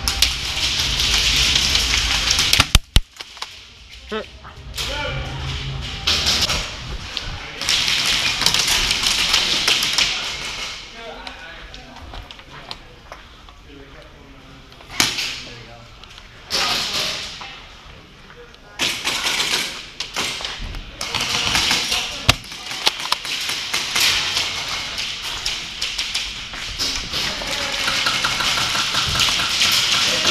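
Movement noise from an airsoft player's gear and feet on a concrete floor, coming in bursts of a second or more, with a few sharp clicks and knocks, the loudest a little under 3 seconds in. Faint voices sound in the background.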